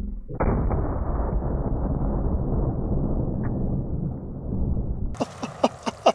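Slowed-down replay of a 500 S&W Magnum snub-nose revolver shot and the water jug it hits: a deep, drawn-out boom and rumble lasting about four and a half seconds, ending abruptly about five seconds in.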